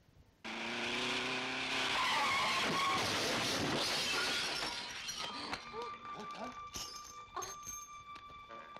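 A loud, noisy film sound effect starts suddenly about half a second in and holds for several seconds, then thins out into scattered sounds with a few steady ringing tones.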